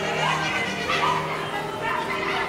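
Sustained keyboard chords played softly under a congregation praying aloud, with short rising cries from voices in the crowd, three of them within two seconds.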